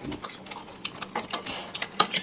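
People eating chicken chow mein with forks: irregular smacking and chewing mouth sounds, with forks clicking and scraping on the plates.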